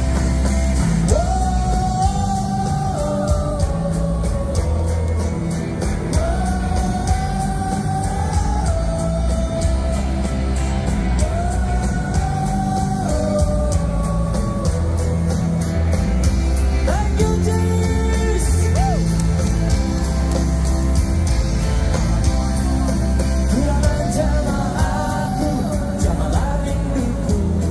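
A live rock band plays through a stadium PA, recorded from within the crowd. The drums keep a steady beat under the band while a singer sings long held phrases that rise into each note, one roughly every five seconds.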